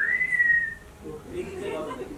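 A single short whistle that rises quickly in pitch and then levels off and sags slightly, lasting under a second. Faint murmuring voices follow.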